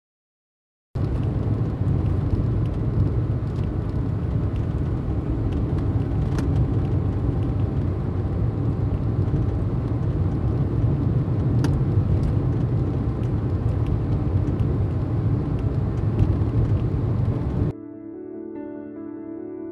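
Steady low rumble of engine and road noise inside a moving motorhome's cab, starting about a second in, with a couple of faint ticks.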